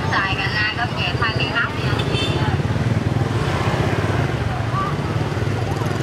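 Steady drone of street traffic with motorbikes going by, under the chatter of a crowd; voices stand out over the first two seconds.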